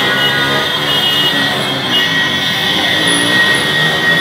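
Many motorcycle engines running and revving together in slow, dense traffic, with steady high tones held above them.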